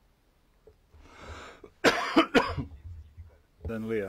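A person coughing, a short burst of two or three loud coughs about two seconds in, followed near the end by a voice starting to speak.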